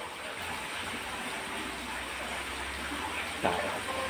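Steady hiss of background noise coming through a phone's speaker on a video call, with a faint voice briefly near the end.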